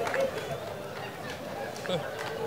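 Faint murmur of voices with no clear words, and a few faint clicks.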